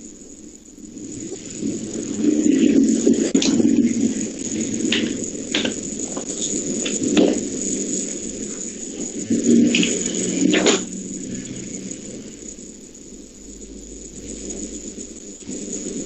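Rustling and handling noise with scattered sharp clicks and taps, louder a couple of seconds in: people working at desks with paper, pens and calculators.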